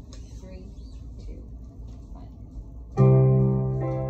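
Quiet room with a few small handling sounds, then about three seconds in a song begins with a loud chord on a digital piano and guitar that rings on and slowly fades, followed by further notes.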